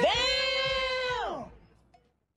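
A man's long, high-pitched, drawn-out exclamation: one held vowel that slides up at the start and drops away after about a second and a half.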